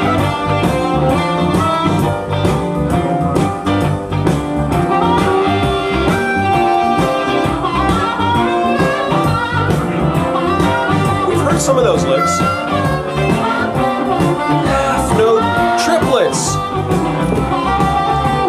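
Recorded blues harmonica solo on a C harp in a triplet style with clean blue thirds, over a band playing a medium G shuffle.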